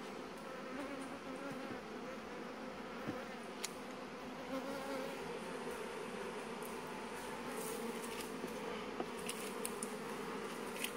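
Honeybees buzzing in an open hive: a steady colony hum, with a couple of faint clicks.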